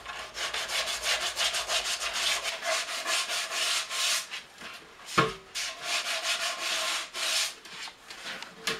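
A gloved hand rubs along the outside of a hooped oak barrel's staves in quick back-and-forth strokes. There is a single knock a little past halfway, as the barrel is shifted on his lap.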